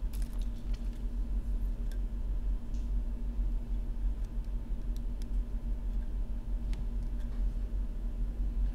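Steady low electrical hum from bench equipment, with a few faint, short clicks of small parts being handled.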